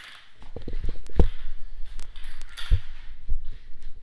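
Handling noise from the recording camera being picked up and moved: rubbing and dull thumps on its microphone, with the strongest thumps a little over a second in and near three seconds.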